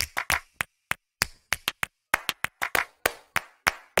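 A quick, uneven run of sharp percussive claps, about five a second, with short silences between them, as a percussion-only passage of the soundtrack.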